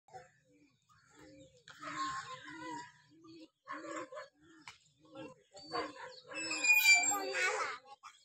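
Domestic pigeons cooing: a run of short, low, throaty coos repeating every half second or so. Louder, higher chirping calls come near the end.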